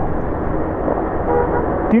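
Steady wind and road noise of a Bajaj Pulsar NS200 motorcycle being ridden, engine running underneath. A brief faint horn toot sounds a little past the middle.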